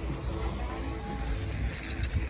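Low rumble of wind and handling on a phone microphone as the camera is moved, with faint music playing in the background.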